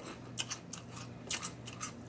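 Faint chewing with a few short, sharp mouth clicks and smacks, heard close to the microphone.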